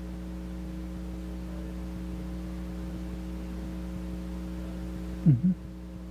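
Steady electrical mains hum from the recording chain. Near the end there is one brief loud sound that falls and then rises in pitch.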